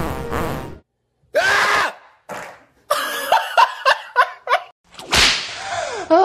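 A quick run of sharp edited sound effects: a burst at the start, a rapid string of short pitched strokes in the middle, and a loud rush near the end.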